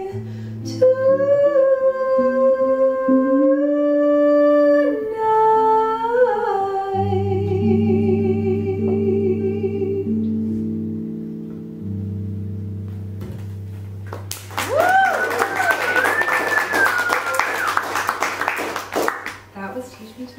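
Female jazz singer holding the song's final long notes with vibrato, stepping down in pitch, over archtop electric guitar chords that ring on after she stops. About fourteen seconds in, the audience breaks into applause with whooping cheers, dying away near the end.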